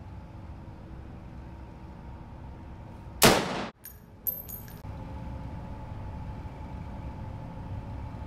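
A single rifle shot from a scoped rifle about three seconds in, loud and sudden, followed within a second by a few short, high metallic clinks, fitting the spent brass case bouncing on the concrete floor.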